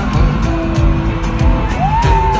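Live afrobeat band music filmed from the stadium crowd, with a steady bass-drum beat under held notes; near the end a note slides up and hangs on.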